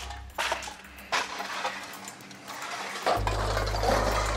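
Metal clattering and clinking as an aluminium roller conveyor section is handled and set down among loose tin cans, with two sharp clanks about half a second and a second in. Background music with a steady low bass comes in near the end.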